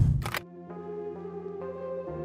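A short swooshing sound effect in the first half second, then soft background music of steady held synth chords.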